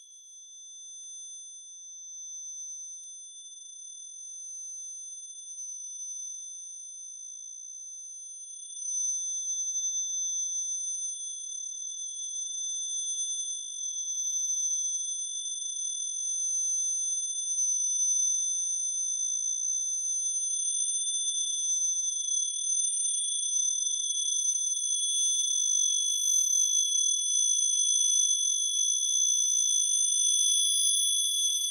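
Acousmatic electronic music made of several steady, high sine tones held together. It grows louder about nine seconds in, and more high tones step in near the end.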